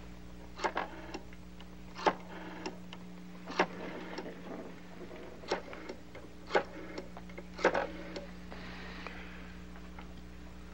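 Rotary telephone being dialled: about six digits, each a sharp click followed by a short rattling whirr as the dial spins back, one to two seconds apart.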